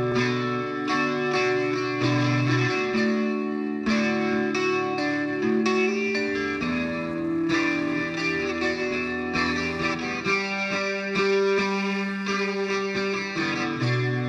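Opening of an emo revival rock song: guitar-led instrumental music with ringing notes and chords changing every couple of seconds, without vocals.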